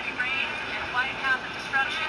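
Thin, high-pitched voices from a television programme, heard through the screen's small speaker, with short rising and falling syllables about a second in and near the end.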